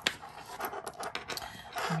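A sharp click near the start, then soft rustling handling noise with small ticks and faint breathing, as the beaded memory-wire necklace is handled.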